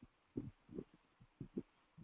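Near silence broken by four or five faint, short, low thumps spread over two seconds.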